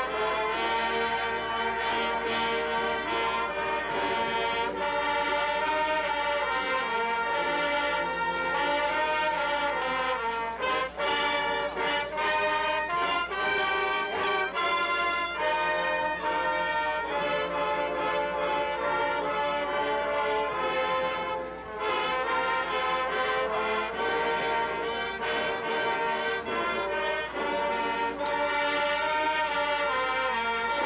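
Marching band playing, brass-led with sousaphones on the bass line, in sustained full chords, with a passage of short punched notes about ten to fifteen seconds in.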